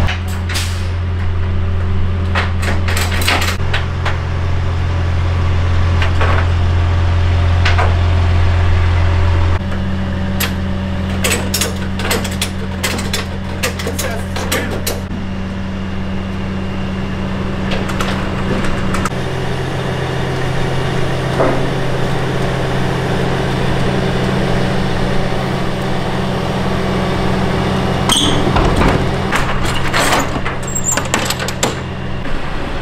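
Car-carrier truck's engine running with a steady low drone that changes pitch a few times, under clusters of metal clanks and knocks from the carrier's deck and door hardware.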